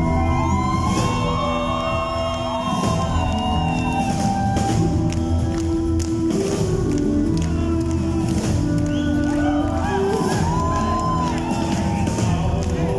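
Live rock band playing an instrumental passage: electric bass and drums under sustained melodic notes, steady and loud.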